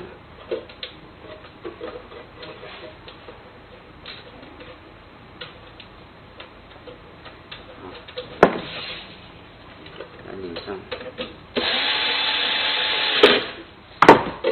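Small clicks and handling knocks of lock parts, with one sharp knock about eight seconds in. Near the end, an electric screwdriver runs steadily for under two seconds, driving in the lock cylinder's fixing screw, and stops with a click.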